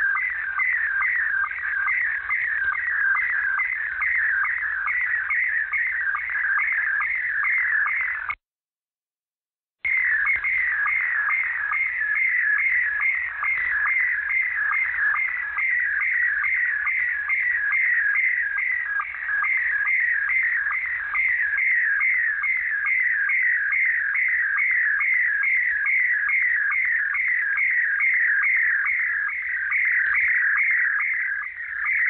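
A repeating electronic chirp tone received over shortwave in upper sideband, with about two and a half chirps a second, heard through the narrow, hissy radio passband. The audio cuts out completely for about a second and a half, about eight seconds in.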